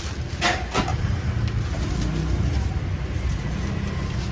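Steady low rumble of street traffic, with a couple of brief crinkles of a plastic bag being handled about half a second in.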